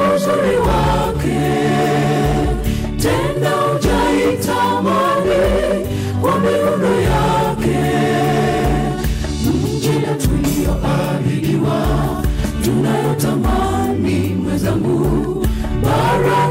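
Mixed church choir singing a Swahili gospel song in parts through handheld microphones, over a steady low bass line and a regular beat.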